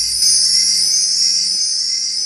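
Synthetic logo-intro sound effect: a high-pitched shimmering whine that slowly rises in pitch, with a low rumble dying away in the first second.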